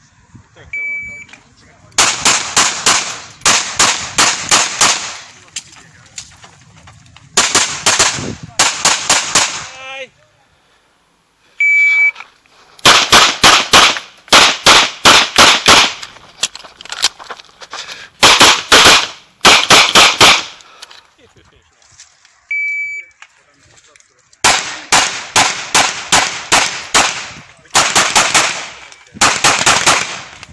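A shot timer's start beep sounds, then rapid strings of pistol shots follow, mostly fired in quick pairs. This happens three times: a beep, then several bursts of fast shooting, with short pauses between strings.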